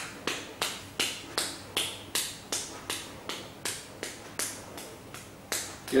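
Sharp clicks repeated at an even, quick pace, nearly three a second, like a beat being kept for fast forehand shadow strokes.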